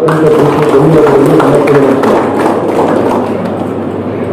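A man speaking over a microphone for about the first two seconds, then a crowd clapping, a dense run of quick claps that carries on to the end.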